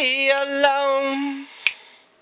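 A man singing unaccompanied, holding one long steady note that ends about one and a half seconds in. A few short sharp clicks fall in with the singing, and a lone one comes just after the note ends.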